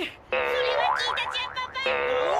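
Cartoon comedy sound effect: a held, buzzy tone with a wobbling boing over it, starting about a third of a second in, breaking off briefly near the end and starting again.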